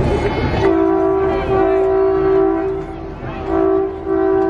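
A two-note vehicle horn starts about half a second in and is held for roughly two seconds. After a short break it sounds again, briefly, near the end.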